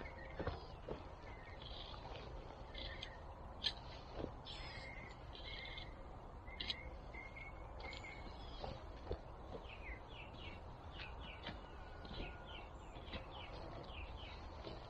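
Small birds chirping and calling in quick short notes, with faint rustling and a few knocks as wood-chip mulch is pulled back with a long-handled garden tool.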